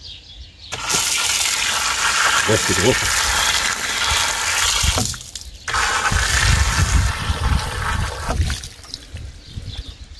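Water running from a stone wall fountain's brass tap onto hands being washed, in two runs: the first starts about a second in and lasts some four seconds, the second follows a short break and lasts about three seconds.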